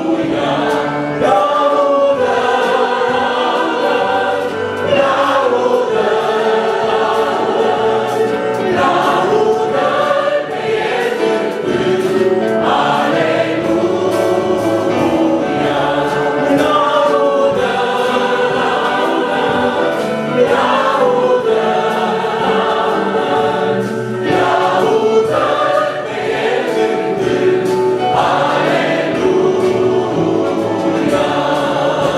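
Mixed vocal quartet, two men and two women, singing a Romanian hymn of praise in harmony through microphones, with electronic keyboard accompaniment. The singing is continuous, with sustained notes.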